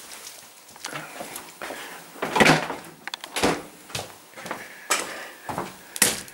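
Handling noises from a heavy vacuum-packed slab of sirloin beef being taken out of a fridge and set down on a wooden chopping board: several separate knocks and clatters, the loudest about two and a half seconds in.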